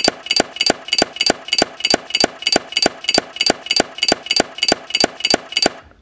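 Rapid, perfectly even ticking, about five sharp ticks a second, each with a short bright ring. It stops abruptly just before the end.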